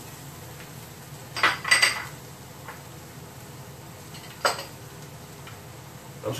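Kitchenware clinking: two or three light clinks about a second and a half in, and one sharp knock near four and a half seconds, over a low steady background.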